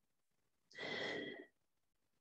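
A person sniffing a goat's milk cheese log held to her nose: one breath through the nose, a little under a second long, about halfway through, with a faint whistle in it.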